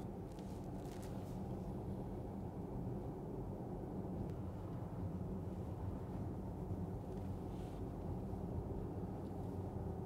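Steady low road and tyre noise heard inside the cabin of a Porsche Taycan electric car cruising along a country road.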